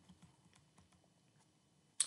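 Near silence with a few faint computer keyboard clicks in the first second, keys pressed to advance a presentation slide.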